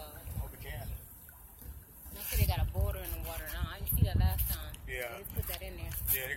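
Voices talking, starting about two seconds in, over an uneven low rumble.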